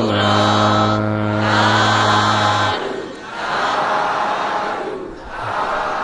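A Buddhist congregation chanting "sādhu" in unison, the customary call of assent at a sermon's close. It begins with a long drawn-out note lasting about three seconds, followed by shorter chanted phrases.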